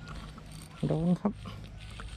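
Baitcasting reel cranked steadily to bring in a hooked fish on a bent rod, its gears and handle making a mechanical whir.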